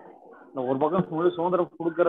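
Speech: a person talking over a video call, starting about half a second in after a brief low pause.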